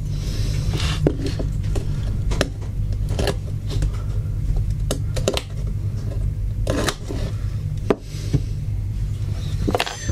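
A small blade scraping at the conformal coating on the chips of a circuit board, heard as scattered short scratches and clicks along with handling of the board on the bench. A steady low hum lies underneath.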